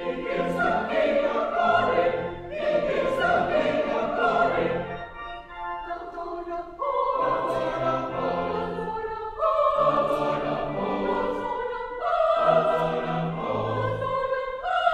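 Church choir singing a hymn or anthem in sustained chords with pipe organ accompaniment, phrase by phrase, with a short break in the singing about five to seven seconds in.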